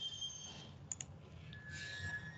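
Computer mouse clicking: a quick double click about a second in, faint, over low background hiss.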